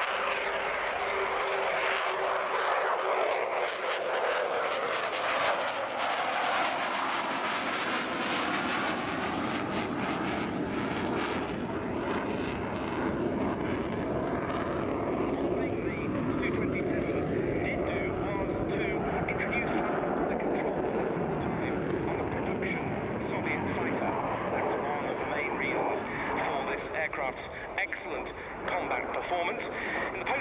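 Jet roar from a Sukhoi Su-27's twin turbofan engines as it flies a display overhead. The noise is strongest through the first dozen seconds and then settles to a steadier, duller roar.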